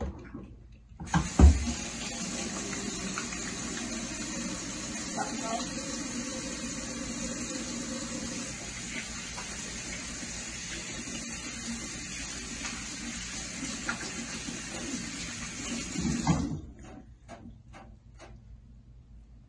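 Kitchen faucet running into a stainless-steel sink, with the stream splashing over hands being washed. It comes on about a second in with a sharp knock, the loudest sound here, runs steadily, and is shut off near the end.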